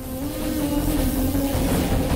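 Film trailer sound design: a loud swelling wash of noise over a deep rumble, with one held low drone tone that fades near the end.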